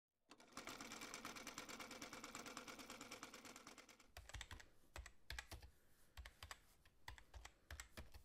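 Quiet typing sound effect: a fast, even run of clicks for about the first four seconds, then slower, separate key clicks with soft low thumps as the title is typed out letter by letter.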